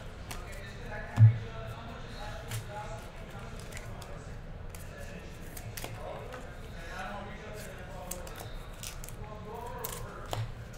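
Trading cards handled by hand: chrome cards flicked and slid through a stack and a card worked into a clear plastic sleeve, giving scattered light clicks and rustles, with one thump about a second in. Faint voices in the background.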